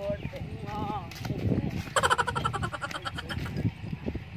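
Men talking, and about halfway a loud, rapidly quavering bleat lasting about a second.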